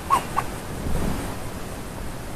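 Wind buffeting the microphone: a steady rushing noise with a low rumble.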